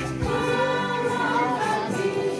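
A choir singing a hymn, several voices holding long notes together.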